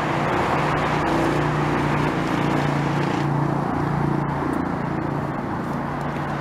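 Road traffic: steady engine hum and tyre noise from vehicles on the street.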